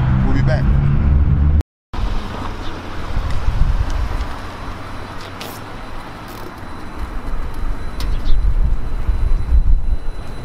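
Roadside traffic noise from cars passing on a street, with wind rumbling on the microphone. The sound drops out briefly about two seconds in, and the traffic grows louder near the end as a car goes by.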